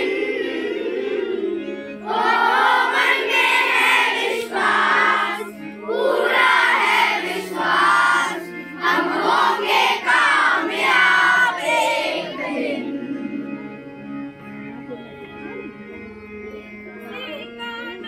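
A large group of schoolchildren singing a prayer song together in unison, in phrases with short breaks, over a steady held low note. The singing grows quieter from about thirteen seconds in.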